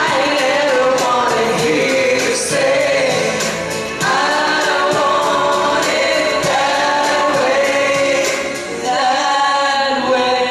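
A woman singing into a handheld microphone over backing music with a steady beat, in held phrases with two short breaths between them.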